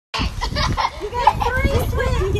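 Several voices, children's among them, talking and calling out over each other.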